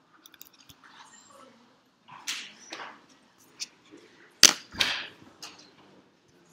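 A few knocks, clicks and rustles, with two sharp knocks close together about four and a half seconds in.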